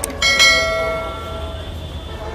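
Metal struck twice in quick succession, the second strike louder, then ringing on like a bell and fading over about a second and a half.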